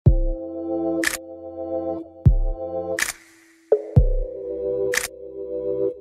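Instrumental intro of a pop song: sustained keyboard chords over a deep kick drum and a sharp clap about every two seconds. About three seconds in, the music briefly drops out, then the chords come back in.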